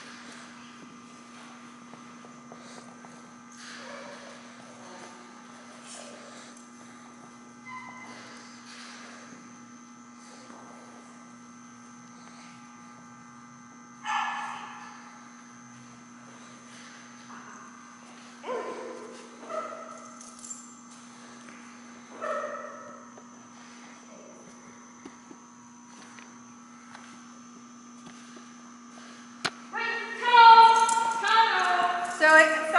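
Dog barking a few times in short single barks, the loudest about a third of the way in and three more over the following ten seconds, over a steady electrical hum.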